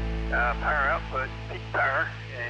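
Short phrases of a spoken voice over the song's last low held notes as they fade out.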